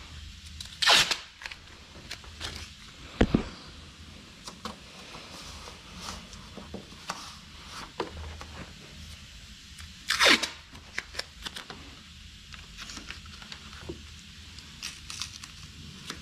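Masking tape being pulled off the roll and torn, in two loud rips, one about a second in and one about ten seconds in, with soft scattered handling noises of tape and paper between them and a low thud about three seconds in.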